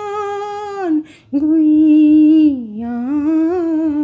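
A woman singing a Hindi film song with no accompaniment, drawing out long held notes without words: one note that falls away just under a second in, then, after a short breath, a longer note that sinks and climbs back up.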